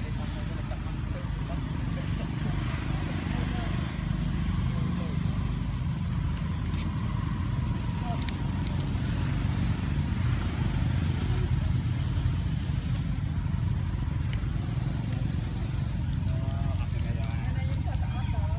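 Steady low outdoor rumble, with faint background voices and a few sharp crackles.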